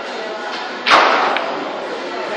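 Pool cue striking the cue ball on a shot: one sharp crack about a second in, then a faint click of balls colliding about half a second later.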